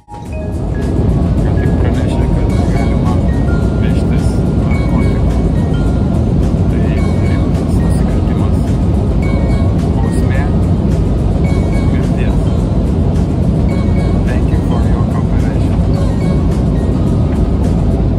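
Loud, steady rumble of jet airliner cabin noise, with a voice partly buried under it.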